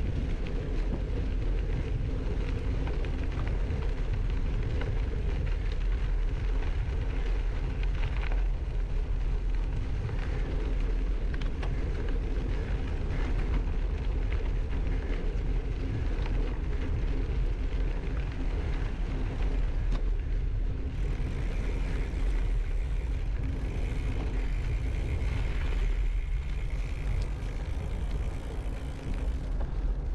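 Gravel bike tyres rolling steadily over a dirt and gravel path, with a strong low rumble of wind on the handlebar camera's microphone. About two-thirds of the way through, a higher hiss joins in for several seconds.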